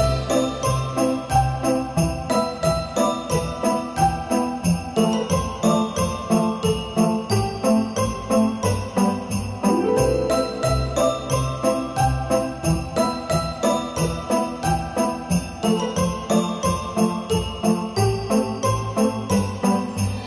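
Upbeat instrumental Christmas background music: jingle bells shaking on a steady beat over a bouncing bass line and melody, the phrase repeating about every ten seconds.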